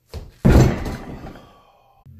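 A 24 kg Holle blob and an Inch dumbbell replica dropped onto the gym floor: a light knock, then a heavy thud about half a second in with a ringing tail that dies away over about a second.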